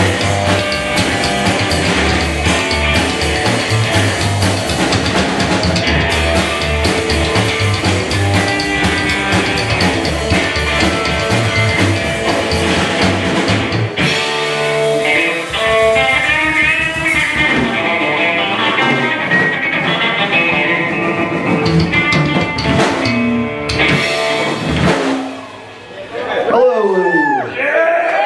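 Live rockabilly band playing an instrumental passage on electric guitar, upright bass and drum kit. About halfway through the low end thins and the guitar plays gliding, bent lead lines. The song ends just before the close.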